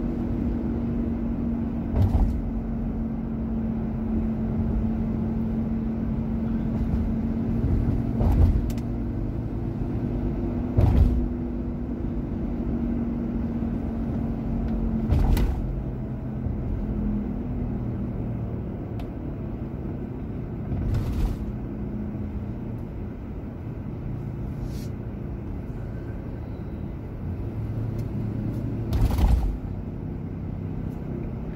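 Car cabin noise while driving: a steady low engine and road drone with a hum through the first half, broken by about six short thumps, the loudest near the end.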